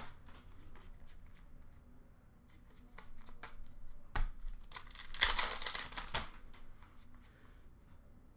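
Foil trading-card pack wrapper being torn and crinkled, a rustling burst about four to six seconds in, with faint clicks and shuffles of cards being handled around it.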